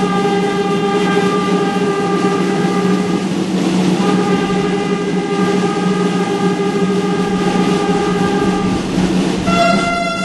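Processional band music, brass holding long sustained chords of several seconds each; the chord changes about three and a half seconds in and again near the end.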